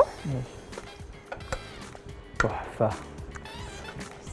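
Metal spoon clinking and scraping against glass as salad is scooped from a glass bowl into a glass dish: a few light, scattered clicks over faint background music.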